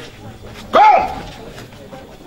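A single short, loud cry, its pitch rising and then falling, about a second in, over faint background voices.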